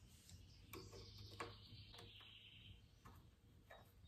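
Near silence broken by a few faint, short clicks of hand tools on steel: a screwdriver and wrench at work on the gib adjusting screws and jam nuts of a lathe carriage.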